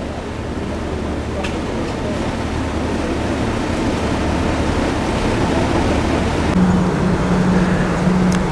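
Steady rushing noise of wind and water on the open top deck of a moving river cruise boat, with the boat's low engine hum underneath, slowly growing louder. Near the end the rushing drops away and a steady low hum takes over.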